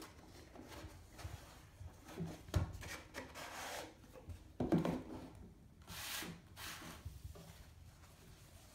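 A cardboard gift box handled on a wooden tabletop: the inner tray slides out of its sleeve with rubbing and scraping, and the lid is lifted off, with two knocks as box parts are set down, about two and a half and about five seconds in.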